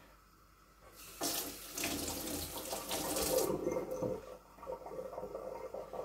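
Kitchen tap water running into a stainless steel sink. It starts about a second in, is strongest for the next two seconds or so, then runs more softly.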